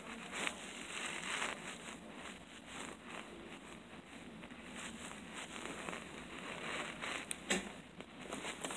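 Rustling handling noise: a flannel sleeve and hand rubbing over the phone's microphone in short, irregular scratches, with a couple of sharper clicks near the end.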